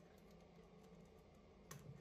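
Faint scattered clicks of a thin plastic drain-cleaning strip being worked through the holes of a metal sink drain, with a sharper click near the end, over a low room hum.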